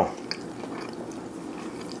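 Faint mouth sounds of someone chewing a bite of tender smoked brisket, with a few soft wet clicks about a third of a second in.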